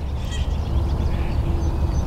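Faint distant bird calls, one drawn out for about a second near the middle, over a steady low rumble.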